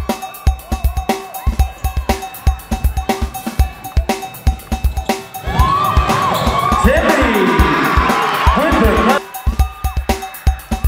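Background music with a steady, driving drum beat. A louder, fuller passage with gliding melodic lines comes in about five and a half seconds in and drops out around nine seconds.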